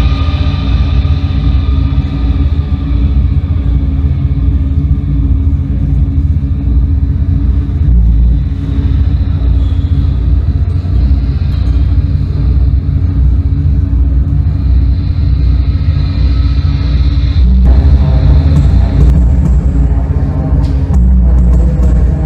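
Live industrial noise music from synthesizers and electronics: a loud, dense rumbling drone with a steady low throb and several held tones above it. About two-thirds of the way in, the higher layer drops out and the sound grows louder and coarser, with a few clicks near the end.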